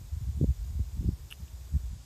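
Wind buffeting the microphone: an uneven low rumble with a couple of stronger gusts.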